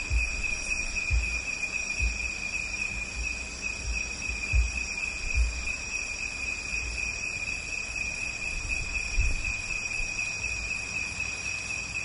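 Crickets chirring steadily in the background, with a few scattered low, dull thumps.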